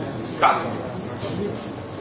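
A man's voice saying a single short word ("cat", the shell command) about half a second in, then room noise.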